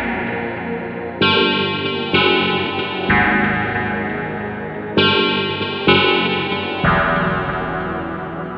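Yamaha FB-01 FM sound module playing its "HUMAN+" patch: pitched notes with a sharp start, struck about a second apart, each fading before the next, with one longer note held for about two seconds midway.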